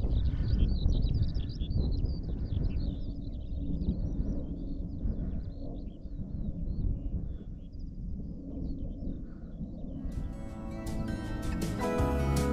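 Wind rumbling on the microphone under a bird's continuous, high twittering song. About ten seconds in, gentle plucked-guitar music comes in.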